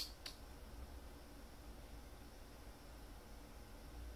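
Quiet room tone with a steady low hum, and two faint clicks right at the start, about a quarter second apart.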